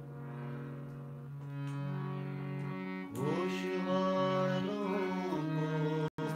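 Harmonium holding steady notes. About three seconds in, a man's voice slides up into a long sung note over it.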